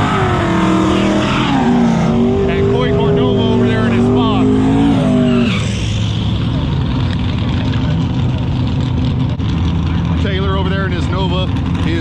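Drag car doing a burnout: its engine is held at high revs, the pitch wavering, over the hiss of spinning tyres. About five and a half seconds in the revs drop off suddenly to a lower, steady engine rumble.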